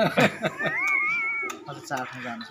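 A single high-pitched meow, about a second long, rising and then holding before it breaks off, with men talking before it.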